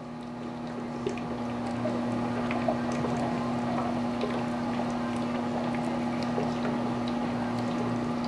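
Small HHO (oxyhydrogen) torch flame burning through the side of an aluminium drink can: a steady hiss with scattered small crackles, growing louder over the first two seconds as the cut gets going. Under it runs a constant low hum and a liquid bubbling sound from the HHO generator and its water bubbler.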